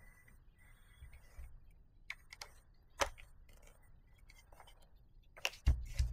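DJI FPV goggles and their battery cable handled on a silicone work mat: scattered light clicks and taps, one sharper click about three seconds in and a knock near the end.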